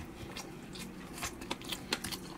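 Close-up chewing of slices of pressed pork head meat with pork skin (pyeonyuk): quiet, irregular mouth clicks and a few crunches, biting on something hard like bone.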